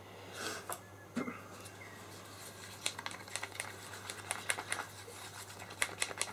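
Quiet handling noises of small painting tools: a soft rustle near the start, then a run of light clicks and taps, several a second in the second half, as a small plastic mixing cup and wooden stirring stick are picked up and handled. A faint steady low hum runs underneath.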